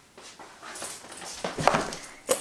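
Rustling and movement noise with a few louder knocks about a second and a half in, as a person comes back and sits down in a wicker chair.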